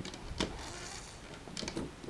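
Small clicks and faint scraping as a plastic loom hook and rubber bands are worked onto the plastic pegs of a Rainbow Loom: one sharp click about half a second in and a few lighter ones near the end.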